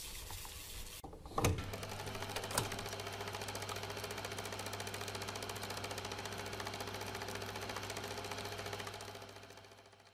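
Film projector running: a fast, even mechanical clatter over a steady low hum, starting after a couple of clunks about a second and a half in and fading out near the end.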